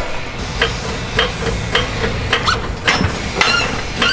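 Repeated sharp metal-on-metal clinks, roughly every half second, each with a short ring, from a threaded steel screw jack stand being worked loose from under a lowered SUV.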